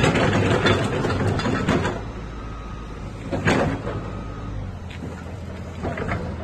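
Caterpillar tracked excavator's diesel engine running. It is louder and busier for the first two seconds, then settles to a steady low rumble, with a short sharp clank about three and a half seconds in.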